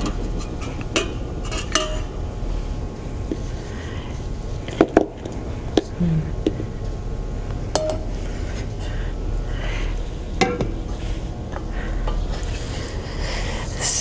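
Plastic spoon scraping and knocking inside a stainless steel pot as hard-boiled eggs are scooped out of the water, with a few separate clinks and knocks spread through. A steady low hum runs underneath.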